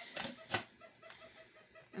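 Faint chicken clucking: a quick, even run of short notes. A couple of light knocks come in the first half second.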